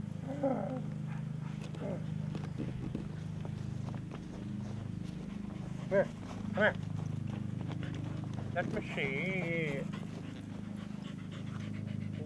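A dog barks twice, short and sharp, a little over halfway through, over a steady low hum. A wavering, voice-like call follows about two seconds later.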